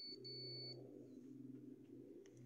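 Xerox 5755 photocopier control panel beeping as its buttons are pressed: a high, steady beep that breaks off once, then sounds again for about half a second, over a low hum.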